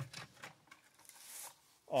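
Faint handling noises: a light click at the start, a few small ticks, then a brief soft rubbing sound about a second and a half in.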